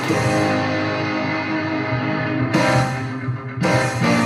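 Instrumental karaoke backing track of a rock song: a distorted electric guitar riff, with two heavy chord hits in the second half.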